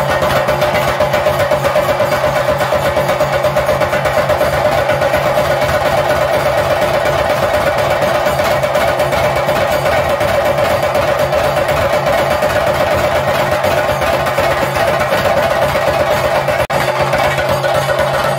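Chenda drums beaten fast and continuously with sticks, with a saxophone holding a steady note over them: live Theyyam ritual drumming.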